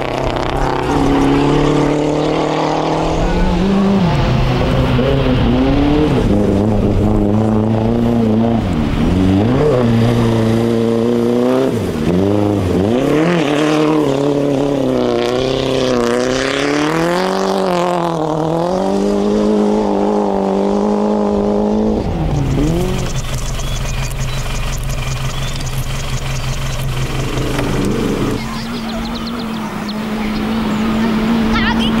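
Rally car engines revving hard as the cars pass on gravel, the pitch climbing and dropping again and again with each gear change. In the last several seconds a steadier engine note takes over.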